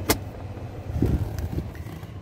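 2011 Lincoln MKX's 3.7-litre V6 idling, a steady low hum heard from inside the cabin. A sharp click comes just after the start and a dull thump about a second in.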